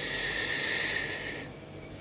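A steady hiss lasting about a second and a half, then fading out.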